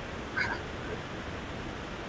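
Quiet background hiss of a video-call line, with one brief faint high-pitched squeak about half a second in.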